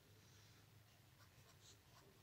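Faint scratching of a ballpoint pen writing on notebook paper, in a few short strokes over a low steady hum.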